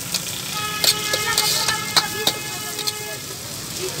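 Metal ladle clicking and scraping against a wok as chopped vegetables and egg sizzle in hot oil. A steady pitched horn-like tone sounds from about a second in for about two seconds.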